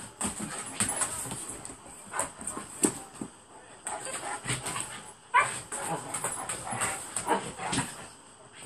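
Two Alaskan malamutes, an adult and a puppy, play-fighting: scuffling with sharp knocks, and short yips and whimpers. The loudest yip comes a little past five seconds in.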